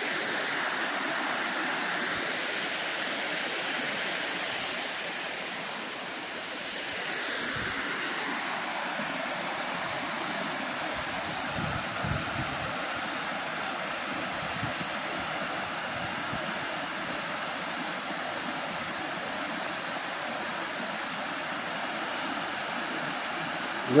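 Steady rush of water spilling over a small dam's spillway and running through rocky rapids below, the flow heavy after rain.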